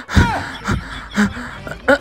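A person's voice making short wordless sounds: four or five quick bursts, several with the pitch sliding down.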